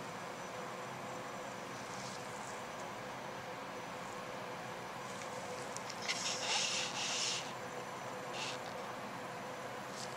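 Steady background hum of the lab room, with a brief hissing rustle about six seconds in and a few fainter ones around it.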